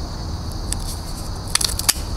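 A cigar being readied by hand for smoking, with one sharp click about two-thirds of a second in and a quick cluster of sharp crackling clicks near the end.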